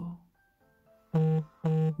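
A storyteller's voice reading aloud: a pause, then two slow, drawn-out syllables in the second half, over faint soft background music.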